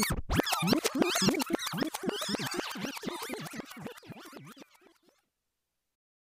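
Turntable scratching in a produced outro: rapid back-and-forth pitch sweeps that fade away and stop about five seconds in.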